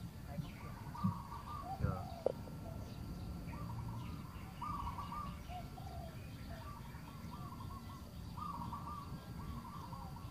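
A bird calling over and over in short warbling phrases, with a few sharp knocks about one to two seconds in.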